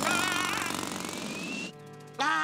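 Cartoon jackhammer hammering into a tree trunk in a rapid rattle, with a wavering high tone early on and a rising whistle over it. The rattle cuts off about 1.7 s in, and soft music follows.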